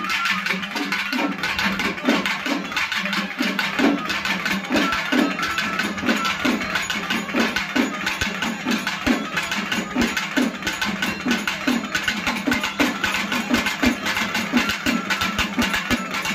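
Tamil temple-festival drums playing a steady, driving rhythm, with low strokes about two a second over a sustained drone and a dense, bright layer of faster beats above.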